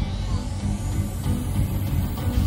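Live jam-band rock with heavy bass under a rising electronic sweep that climbs steadily in pitch to a very high tone.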